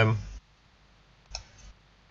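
Computer mouse clicking while an app is opened on screen: one short sharp click about a second and a half in, then a fainter tick just after, following the end of a spoken word.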